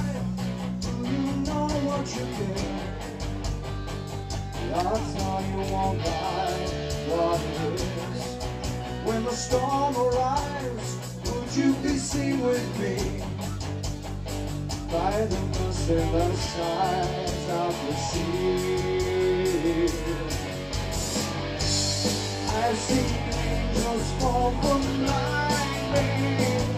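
Live rock band playing: distorted electric guitars, bass guitar and drum kit, with a man singing lead into a microphone.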